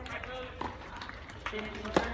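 People talking near the microphone, then, just before the end, a single sharp crack of a tennis racquet striking the ball on a serve.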